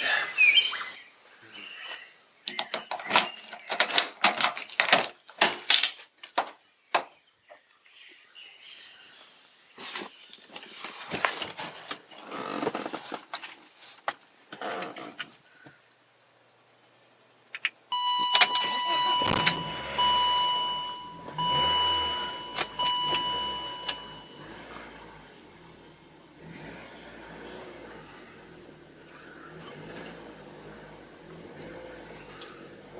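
A run of clicks and knocks of keys and getting into a BMW roadster. Then, about two-thirds in, the dashboard's two-tone warning chime sounds in four pulses as the engine starts and settles to a low, steady idle.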